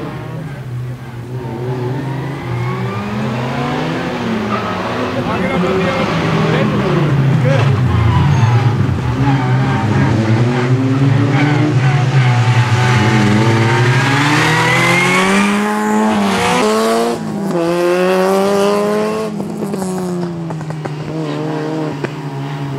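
Two Peugeot 106 hatchbacks' engines revving hard, their pitch rising and falling over and over as the cars accelerate and lift off between the cones. The sound is loudest through the middle as they come close, with one long rising rev about two-thirds of the way through that drops off sharply.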